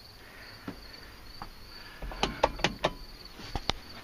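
Faint, steady high-pitched insect trill, like crickets, running under low hiss. About halfway in, a quick run of sharp clicks and knocks with a low rumble, like handling noise.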